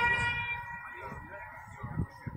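A sela recited through mosque minaret loudspeakers, the voice holding a long note that fades over the first second and lingers faintly in the echo. Irregular low rumbling sits underneath.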